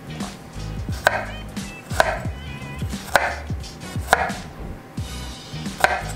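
Kitchen knife cutting garlic cloves on a wooden cutting board: five sharp knocks of the blade on the board, about one a second.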